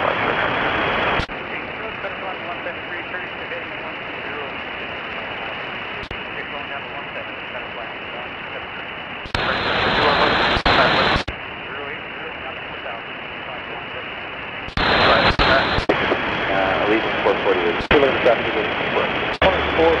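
Air traffic control radio feed: a steady static hiss from an open channel fills most of it. It is broken by a short, louder radio burst about nine seconds in and another from about fifteen seconds in, which carries garbled, unintelligible voice until near the end.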